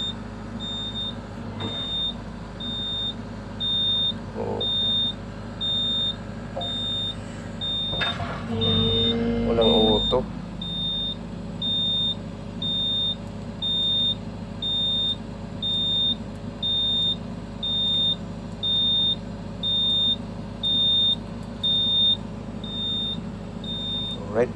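Excavator cab warning buzzer beeping in a steady rhythm, about one high beep every second and a half, over the diesel engine running.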